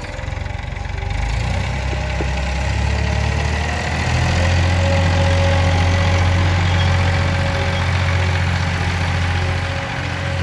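Farm tractor's diesel engine running steadily as it pulls a cultivator through the soil, its low note growing louder over the first few seconds, then holding even.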